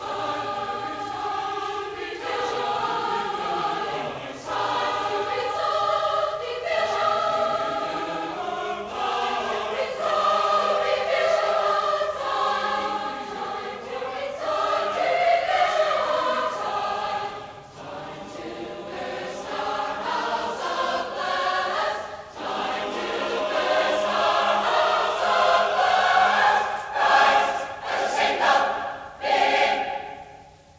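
A choir singing a sustained passage in several parts, swelling louder near the end.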